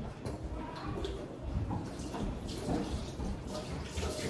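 Quiet kitchen activity: faint scattered clinks and handling noises, with a child's voice faintly in the background.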